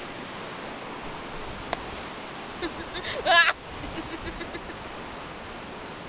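Ocean surf washing over a rocky shoreline as a steady wash of noise. About three seconds in, a person's voice gives a short, loud cry or laugh.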